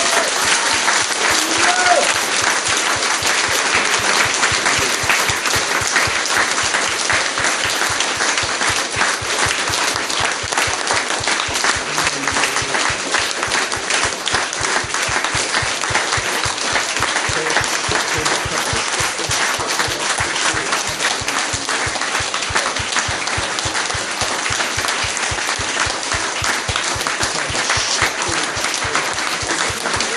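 A congregation applauding: dense, steady clapping.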